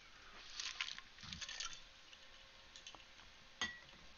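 A person drinking at close range: faint sips and swallows with small wet crackles in the first second and a half, then a single sharp click about three and a half seconds in.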